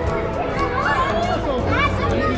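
Many overlapping voices of young children and adults chattering and calling out at once in a gym hall, with no clear single speaker.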